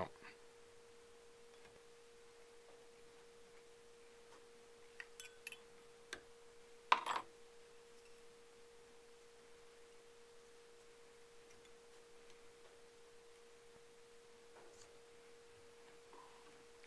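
Near silence with a faint steady tone humming throughout, and a few light clicks plus one short rustle about seven seconds in from fingers handling the fly at the vise.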